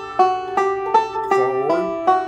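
Recording King M5 five-string banjo picked in three-finger rolls: a steady run of bright plucked notes, about seven a second, with one note sliding in pitch a little past the middle.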